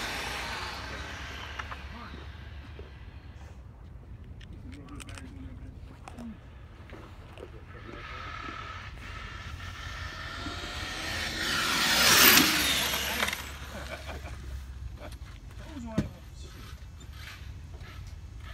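A radio-controlled on-road GT car running on asphalt. It fades as it drives off, then its whine builds as it comes back and passes close, loudest about twelve seconds in before dropping away. A single sharp click comes a few seconds later.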